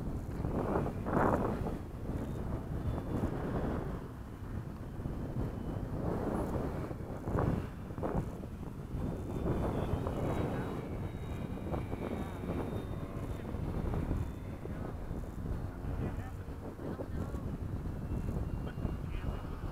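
Wind buffeting the microphone, with the faint whine of a Dynam Gee Bee RC plane's electric motor flying overhead.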